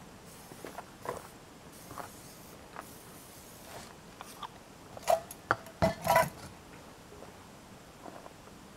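Camp cookware clinking and knocking: a utensil and pots handled on a camp table. The short clinks come scattered, with a louder cluster of knocks a little past the middle.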